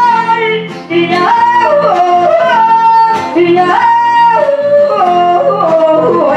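A woman singing into a microphone in long, high held notes that break and step down in pitch, yodel-like, with an acoustic guitar accompanying her. Her phrase breaks briefly just under a second in, then she goes on.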